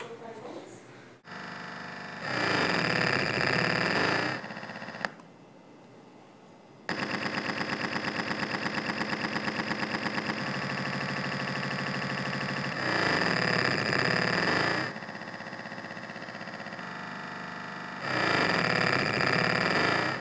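Two small loudspeakers, driven by an Arduino as mirror deflectors for a laser, buzz with their drive signal. The harsh, many-toned electronic buzz jumps to a new pitch and loudness every couple of seconds as the laser traces different shapes. It drops low for a moment about five seconds in, and pulses quickly for a few seconds after that.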